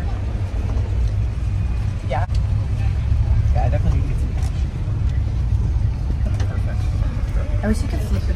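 Steady low rumble of a moving vehicle, with faint voices now and then.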